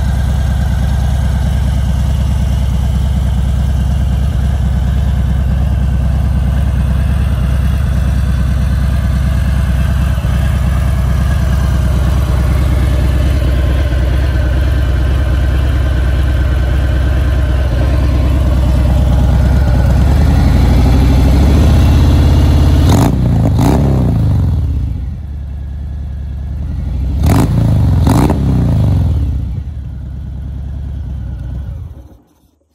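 2018 Harley-Davidson Fat Bob's Milwaukee-Eight 114 V-twin idling steadily through Rinehart Racing slip-on mufflers. Near the end the throttle is blipped twice, each rev rising and falling back to idle.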